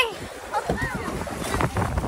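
Wind buffeting the microphone over choppy sea water around an outrigger boat, with a few short knocks or splashes near the end.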